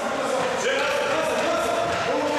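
Players' voices calling out during a basketball game, echoing in a gym hall.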